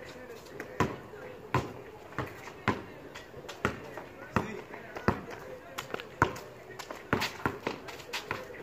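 A basketball dribbled on a concrete driveway, bouncing about once a second and coming faster near the end.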